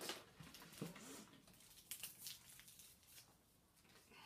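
Faint rustling and a few light clicks as packets and injection supplies are handled, with a small cluster of ticks about two seconds in.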